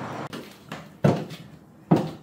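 Footsteps of high-heel platform mules climbing a staircase: a few separate hard knocks, the loudest about a second in and just before the end.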